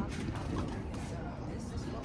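Window blinds being opened, a faint creaking mechanical rattle.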